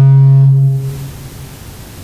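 A man's voice holding a long, drawn-out "I" on one steady pitch, loud, fading out about half a second in. After it there is only faint room noise.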